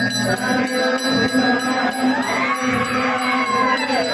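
Temple puja bell ringing continuously over a steady low drone and crowd noise. About halfway through, a pitched tone glides up and back down.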